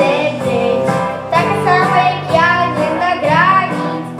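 A young girl singing a Polish pop song into a microphone over full instrumental accompaniment.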